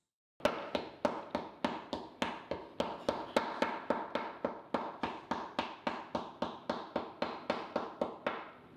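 A wooden paddle beating a block of Yixing purple clay on a workbench. It strikes in an even rhythm of about three blows a second, starting about half a second in.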